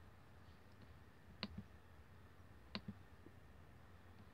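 Two computer mouse clicks about a second and a quarter apart, each a quick double click of button press and release, over near silence.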